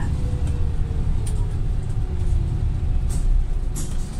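Interior sound of a Volvo B5TL diesel double-decker bus under way: a steady low rumble from the engine and road, with a faint whine that falls slightly in pitch over the first couple of seconds and a few light rattles.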